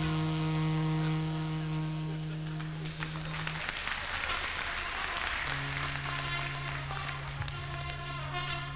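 Free-jazz reed playing: a long, dead-steady low note held for several seconds breaks off into a stretch of rough, noisy sound about three and a half seconds in, then a second, lower note is held steady.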